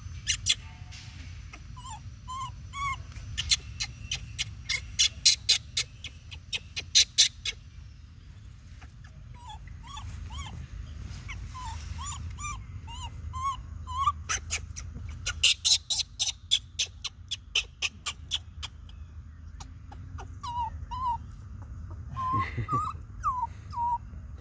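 Baby macaque whimpering: bouts of short, squeaky arched cries repeated a few times a second, mixed with trains of rapid sharp clicks and a steady low rumble.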